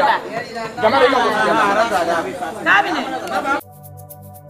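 Chatter of several people talking at once, which cuts off abruptly near the end. Soft music with sustained tones starts straight after.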